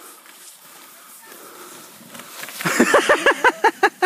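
A person laughing loudly in a rapid run of rising-and-falling "ha"s, about seven a second, starting about two-thirds of the way in after quiet noise.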